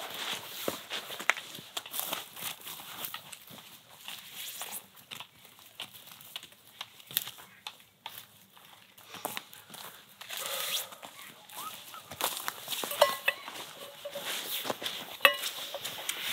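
Footsteps and rustling over forest ground, going away and coming back, with scattered small clicks and knocks. A few short pitched sounds come in about two-thirds of the way through.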